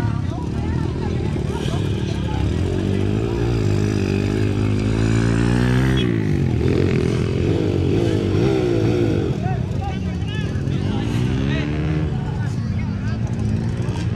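Dirt bike engine revving up and falling back again and again, its pitch sweeping up and down, with voices around it.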